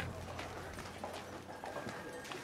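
Irregular clacking and tapping of footsteps and small knocks from a walking mikoshi procession, with a low hum fading out in the first half second.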